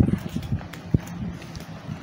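Footsteps on stone stairs: a few irregular shoe knocks going down the steps, with one sharper click about a second in.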